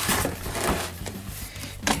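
Cardboard shipping box being handled, rustling and scraping, with a sharp knock near the end.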